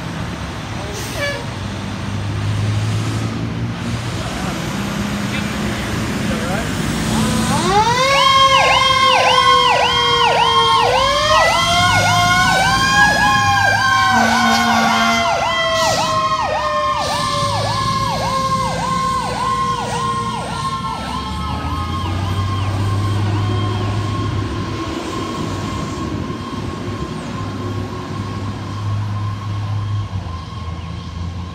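Fire tower ladder truck responding with sirens. About eight seconds in, an electronic siren starts yelping rapidly, a little over two cycles a second. With it, a mechanical siren winds up for about five seconds and then slowly coasts down. The yelp fades away in the last few seconds as the truck pulls off.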